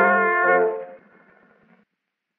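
Early acoustic recording on a 1908 Edison two-minute wax cylinder, played back on a phonograph: the brass-led band accompaniment holds its final chord, which cuts off about three-quarters of a second in. Faint surface noise from the cylinder follows and stops just before two seconds.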